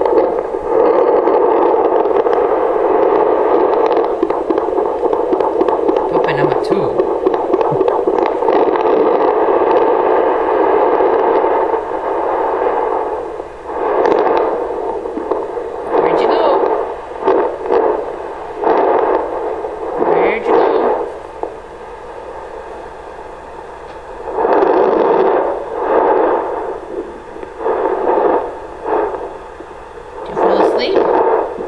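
Handheld fetal doppler's speaker giving a steady loud hiss of static as the probe is held and moved over a pregnant dog's belly in search of puppy heartbeats. After about twelve seconds the hiss breaks into irregular swooshing bursts a second or two apart, with quieter gaps between them.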